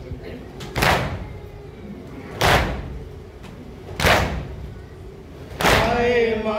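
Mourners beating their chests in unison (matam) to the rhythm of a nauha: four heavy slaps, evenly spaced about a second and a half apart. The group's chanted lament comes back in on the last slap.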